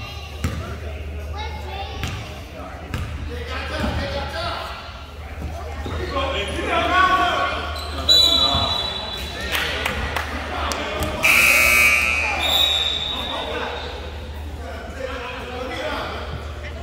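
A basketball bouncing on a hardwood gym floor amid voices from players and spectators, echoing in a large gym over a steady low hum. A short high whistle-like tone sounds about halfway through, a louder buzz-like tone lasting about a second follows a few seconds later, and then another short high tone.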